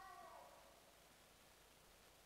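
Near silence: quiet room tone, with one brief faint high-pitched vocal sound sliding down in pitch right at the start.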